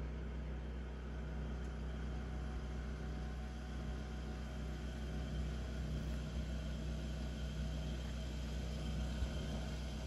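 A steady low machine hum with a faint hiss over it, unchanging throughout.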